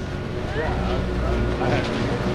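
Steady low machine hum of a chairlift terminal's drive, with a constant tone running through it and voices talking quietly nearby.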